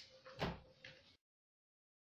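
A faint knock about half a second in and a softer click a little later, then the sound cuts off to dead silence.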